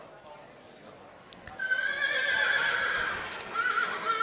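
A Standardbred yearling horse whinnying: one long, high neigh starting about one and a half seconds in, dropping slightly in pitch, then a shorter quavering call near the end.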